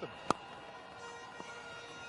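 A cricket bat strikes the ball with one sharp crack about a third of a second in. Under it runs a steady hum from the ground, with a few faint held tones.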